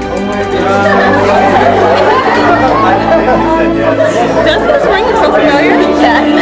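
Many people talking at once in overlapping chatter, over music with sustained tones underneath.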